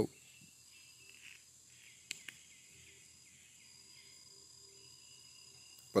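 Quiet outdoor ambience with faint, high chirping repeated several times a second, and a single sharp click about two seconds in.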